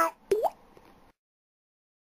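A single water plop with a quick upward pitch glide, about a third of a second in.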